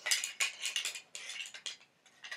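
Light handling noise: a quick run of crisp little clinks and rustles, busiest in the first second and thinning out toward the end.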